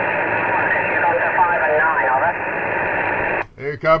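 An 11-metre CB radio receiver gives a loud, thin hiss of static with a weak, barely made-out voice in it: the distant English station's signal coming across the Atlantic. The static cuts off abruptly about three and a half seconds in, and a clear man's voice starts just before the end.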